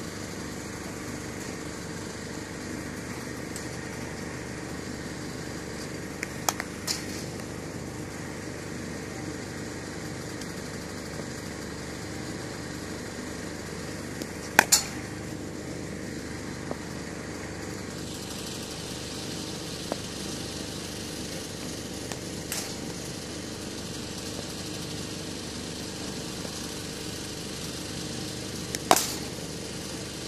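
Cricket ball cracking off a bat about every seven or eight seconds, sharp short strikes with the loudest near the middle and near the end, over a steady engine-like hum.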